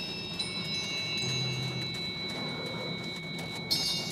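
Soft background music of high, chime-like tones that ring on steadily, with a new bright chime struck near the end.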